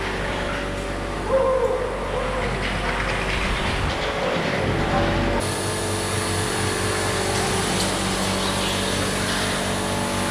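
Go-kart engines running on an indoor track, a steady hum with sustained tones. About five seconds in the sound changes abruptly and a brighter, hissier engine noise takes over.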